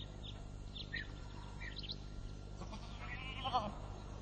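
A sheep bleats once, a wavering call a little after three seconds in, after several short bird chirps in the first half.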